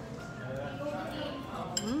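Light clinking of dishes and cutlery over faint background music, with a couple of sharp clinks near the end.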